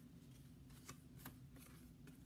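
Faint handling and turning of a small book's paper pages, a few soft ticks over a low steady room hum.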